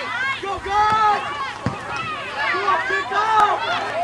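Several people calling and shouting over one another, with no clear words, and one short dull knock a little before the middle.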